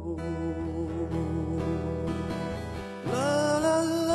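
Acoustic guitar strummed under male voices singing long, held notes with vibrato. About three seconds in, a voice slides up into a louder, higher sustained note.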